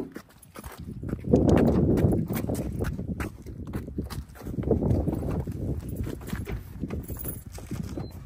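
Gusty wind buffeting the microphone, swelling strongly about a second and a half in and again near five seconds, with scattered small clicks and knocks over it.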